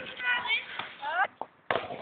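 A person's voice talking, with short upward-gliding calls about a second in and a brief pause just before the end.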